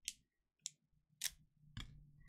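Faint foil trading card pack being slit open with a utility knife and handled: four short, crisp scratches of blade and foil wrapper, about half a second apart.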